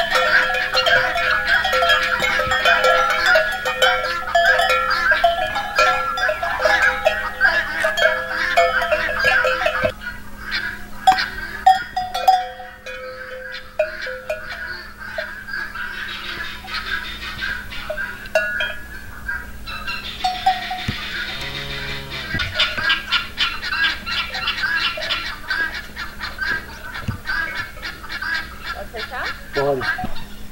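Metal neck bells on walking dairy cows clanking, a dense run of ringing clanks that thins out about ten seconds in and picks up again near twenty seconds.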